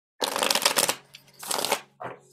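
A deck of tarot cards being shuffled by hand, the cards flicking and slapping against each other in two bursts, the second shorter than the first.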